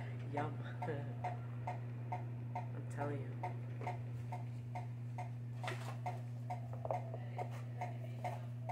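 Steady low electrical hum with a quick, regular ticking about four times a second over it, and a brief rustle of the handheld clip-on microphone being handled about six seconds in.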